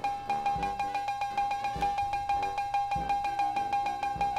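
Electronic drum beat from GarageBand's step sequencer playing back: a fast, even run of ticks, about eight a second, over a steady high ringing note, with a low kick drum about every second and a quarter.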